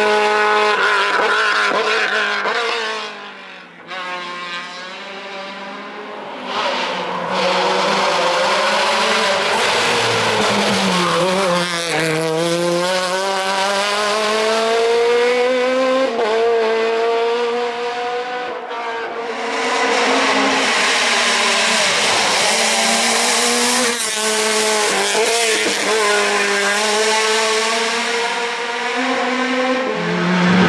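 Race car engine at full throttle on a hill climb, revving up through the gears and dropping back between bends, its pitch climbing and falling with each shift. The sound dips about three to six seconds in as the car moves away, then returns loud.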